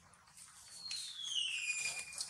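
Baby long-tailed macaque crying: one high-pitched call that starts partway in and falls steadily in pitch over about a second.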